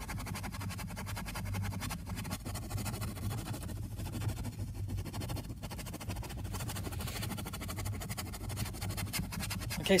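Bristle detailing brush scrubbing a foamy, ribbed rubber footwell mat lathered with all-purpose cleaner: a rapid, continuous scratchy rubbing, with a steady low hum underneath.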